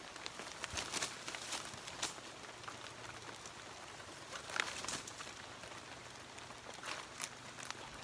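Abaca fibre strips rustling and scraping as they are pulled through by hand, with a few short, sharp swishes scattered through a faint background.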